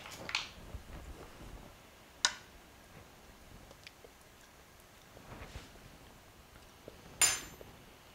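Quiet kitchen handling with a few sharp clinks of small metal measuring spoons: one about two seconds in, and a louder one near the end that rings briefly.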